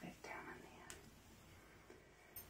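Near silence: faint room tone, with a brief soft breathy sound just after the start and a single light click about a second in.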